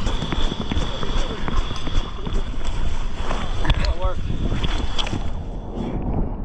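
Wind buffeting a body-worn camera's microphone, with irregular knocks and scuffs of footsteps and handling of firefighting gear, and a faint steady high tone through most of it.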